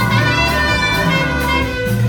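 Live jazz ensemble music: saxophone and a choir of voices holding sustained chords over bass and drums, with a steady beat.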